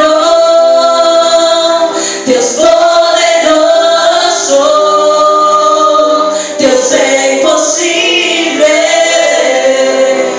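A woman singing a worship song into a microphone, with other voices singing along, in long held phrases of about two seconds each.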